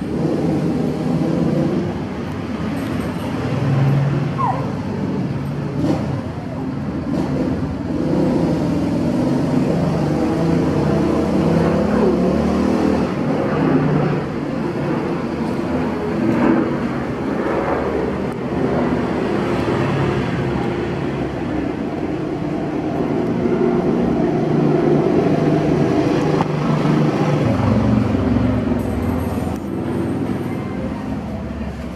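Continuous low rumble of motor-vehicle engine and traffic noise, swelling and easing slightly; no chewing stands out above it.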